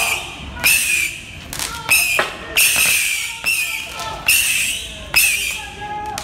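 A sharp strike repeating steadily, a little more than once a second, each one trailing off briefly.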